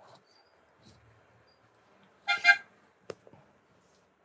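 A vehicle horn honks twice in quick succession, short and loud, a little past two seconds in, followed about half a second later by a sharp click.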